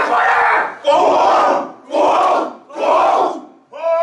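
A group of men shouting a haka in unison: four loud, hoarse chanted shouts about a second apart, then a pitched, held call begins near the end.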